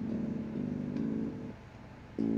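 Electric bass guitar played through a small practice amp: three plucked notes, each about half a second long, followed by a brief lull near the end.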